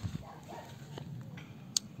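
Faint water flowing into a homemade floating pool skimmer as the filter pump draws the surface film down, with one sharp click near the end.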